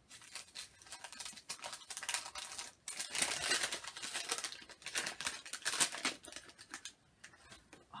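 Small gift wrapping being torn open and crinkled by hand as a little package is unwrapped: irregular rustling and tearing, busiest in the middle and dying away near the end.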